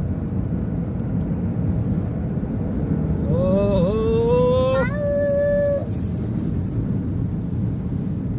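Steady road and tyre noise inside a car's cabin, driving on a wet expressway. About three seconds in, a person's voice holds a drawn-out, wavering note for about two seconds.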